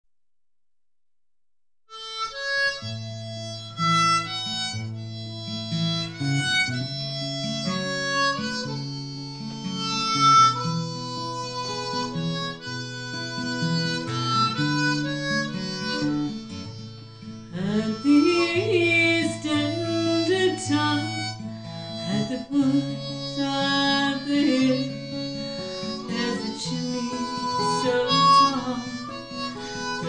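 Folk-song instrumental introduction: a harmonica plays the melody over acoustic guitar, starting after about two seconds of silence. The guitar strumming grows fuller a little past halfway.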